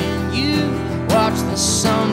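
A steel-string acoustic guitar strummed steadily, with a man singing over it.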